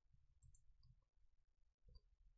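Near silence with a low hum, broken by a few faint mouse-button clicks about half a second in and again near the end.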